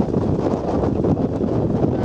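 Wind buffeting the camera microphone at sea, a loud, steady low rumble.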